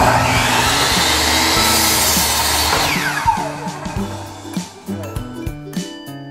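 Ryobi miter saw started suddenly and run loud for about three seconds through a wooden board, then released, its blade spinning down with a falling whine.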